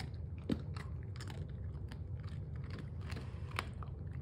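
Dog chewing and crunching something taken off the floor, in irregular crunches with a sharper one about half a second in and another near the end, over a low steady hum.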